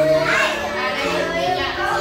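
A crowd of young children chattering and calling out together, many small voices overlapping.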